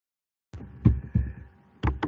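A few dull taps close to the microphone, four strokes spaced roughly a third to half a second apart, starting about half a second in over a faint hum.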